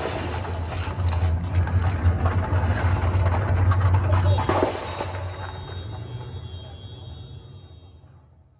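Dense crackling over a low rumble, like a gunfire or explosion sound effect, fading out steadily from about halfway through.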